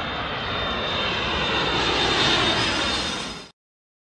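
Aircraft engine sound effect as a cartoon flying craft takes off. The engine noise is steady, swells to its loudest a little past two seconds in, then fades and cuts off suddenly about three and a half seconds in.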